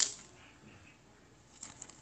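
Hands handling a trading card and a plastic card sleeve on a wooden table: a brief sharp rustle at the start, then quiet, with a few light clicks near the end.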